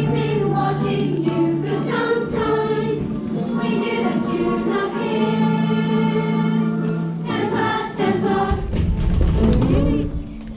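A large stage cast singing together in chorus, with long held notes and music.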